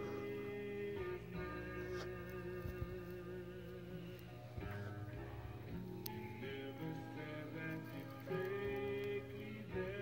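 Music playing from a vinyl record on a turntable: held melodic notes with a light waver, moving to a new note every second or so.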